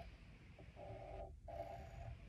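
Faint sound of a graphite pencil drawing lines on paper, two strokes with a brief break about a second and a quarter in, over a low steady room hum.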